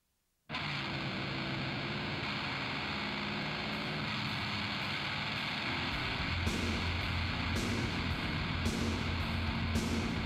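Heavy metal song intro: a distorted electric guitar starts abruptly about half a second in and keeps playing. About six seconds in the drums join, with a cymbal struck roughly once a second over a pulsing low beat.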